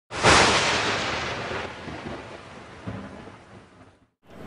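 Logo-intro sound effect: a sudden loud thunder-like crash about a quarter second in, its rumble fading away over about three seconds.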